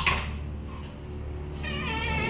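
A wooden door swinging slowly open: a sharp click at the start, a steady low rumble under it, then a high wavering hinge creak near the end.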